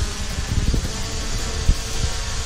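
DJI Mavic Pro quadcopter's propellers buzzing steadily as it hovers overhead, with a short low thump near the end.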